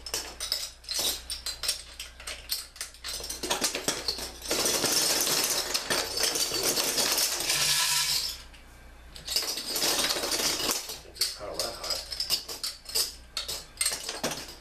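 Metal bottle caps clattering as they are dropped into a wooden shadow box and land on the pile of caps behind its glass. Scattered clinks alternate with two long runs of dense clatter, the first about four seconds in and the second just after halfway.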